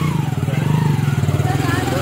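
An engine idling steadily with a fast, even pulse, with people talking faintly over it.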